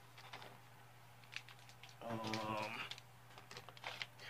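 Faint clicks and light rustling of a comic book being taken off and set onto a clear plastic display stand, with a short spoken 'um' about halfway through.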